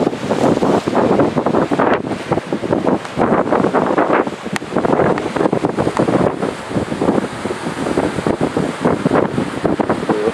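Wind buffeting the microphone in uneven gusts, over the wash of surf breaking on a rocky shore.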